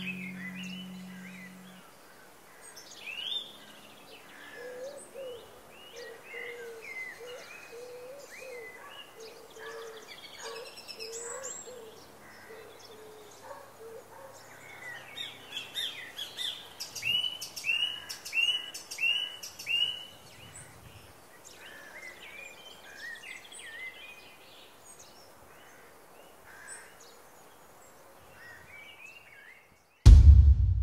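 Several wild birds singing and chirping, with a lower repeated call through the first half and a quick run of about five repeated notes past the middle. A held guitar chord is dying away in the first two seconds.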